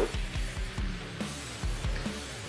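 Background music with steady low bass notes and a soft low beat.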